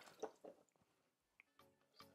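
Near silence, with two faint, brief wet sounds in the first half second: a sponge being handled in a bowl of water.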